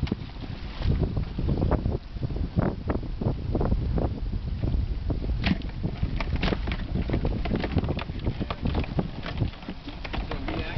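Wind buffeting the microphone in an uneven low rumble, with scattered knocks and clicks as Dungeness crabs are handled in a plastic cooler.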